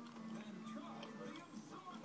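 Faint voices in the background over a steady low hum, with two light clicks, one about a second in and another half a second later.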